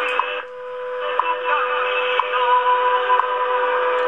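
Shortwave AM reception of the WWV 5 MHz time-signal station through an RTL-SDR receiver: a steady 500 Hz tone with a short tick once a second over band noise. About half a second in, the signal dips and comes back over about a second as the tuner's automatic gain control is switched off.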